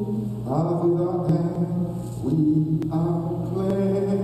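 A priest's sung chant of a Mass prayer in long held notes, changing pitch a few times, over a steady low drone.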